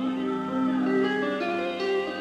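Live rock concert music in an audience recording: an instrumental passage of layered, overlapping sustained notes over a held low drone, with no vocals.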